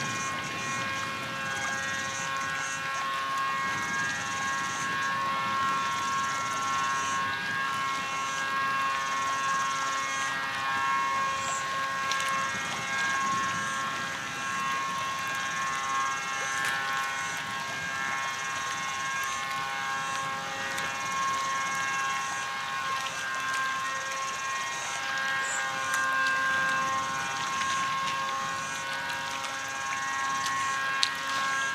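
Small waves lapping against a low concrete shore edge, under a steady droning hum made of several held tones and a high buzzing that comes and goes every second or so.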